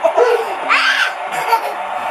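Laughter and indistinct voices of a family, children among them, with a brief high-pitched cry a little under a second in.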